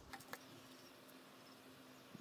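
Near silence, with two faint clicks in the first half second from small metal parts being handled as a quick-release spring bar is worked into a watch's lugs.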